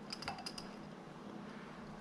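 A few faint, light clicks in the first half-second or so, then quiet room tone: small handling noise as pearl tinsel is wrapped around the hook and tungsten bead in a fly-tying vise.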